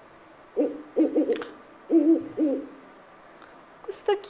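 Owl call played back, a series of short hoots over about two seconds starting about half a second in.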